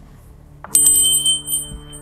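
A bell struck once, about two-thirds of a second in, its bright high ringing dying away over a second, over a low, steady drone of ambient music that carries on.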